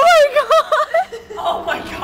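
High-pitched human laughter: a loud, squealing laugh that bounces up and down in several short notes in the first second, then trails off into quieter voice sounds.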